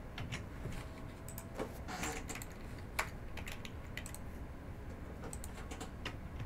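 Faint, irregular clicking of a computer keyboard and mouse as the list is selected and entered, with one sharper click about three seconds in.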